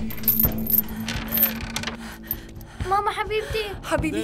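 Padlock and chain on a sheet-metal door rattling and clinking, with sharp metallic clicks in the first two seconds, over background music with a held low drone and a wavering sung voice from about three seconds in.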